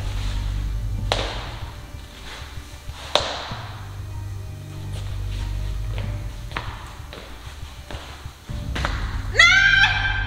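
Background music with a steady bass line and a few sharp hits spread through it, with a loud rising tone near the end.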